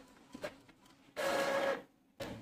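Epson ink-tank inkjet printer printing a page. Faint regular ticks come first, then about a second in a louder, steady motor whirr lasts about half a second as the sheet is fed out, and stops abruptly.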